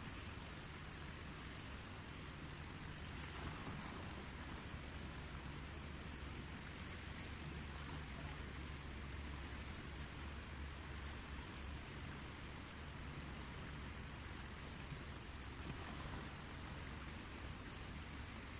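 Steady, even rush of a fast-flowing river.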